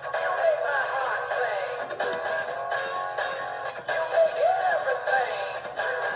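Animatronic singing-fish wall plaque playing its song through its built-in speaker: a backing track with a sung voice, and one brief click about two seconds in.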